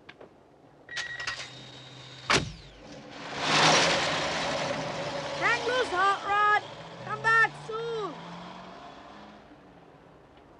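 A car door slams shut, then the car's engine starts and the car pulls away, its sound fading. Midway through comes a run of short squealing tones, each rising and falling.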